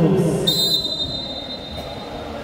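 A referee's whistle blown once: a single steady high-pitched tone that starts sharply about half a second in and is held for about a second and a half.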